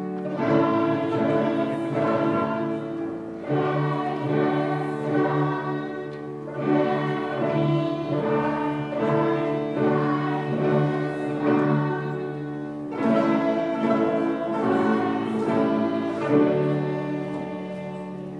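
A class of young beginner violinists playing together in unison, a simple tune in short phrases of about three seconds with brief breaks between them.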